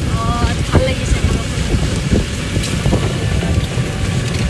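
Wind buffeting the microphone of a moving open-sided rickshaw: a loud, steady low rumble, with a brief voice in the first second.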